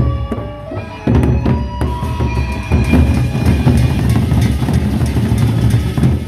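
Sasak gendang beleq ensemble playing: large double-headed barrel drums beaten with sticks in a fast, dense rhythm, with cymbals and other metal percussion ringing above. The playing gets louder about a second in.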